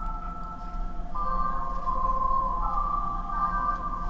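Several held electronic tones that step to new pitches about a second in and again midway, over a steady low hum.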